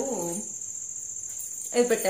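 A woman talking in short phrases, her voice trailing off about half a second in and starting again near the end. Under it runs a steady, faint, high-pitched chirring tone.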